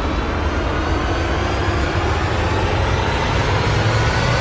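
A loud, steady rumbling noise with a heavy low end, starting abruptly and holding level throughout.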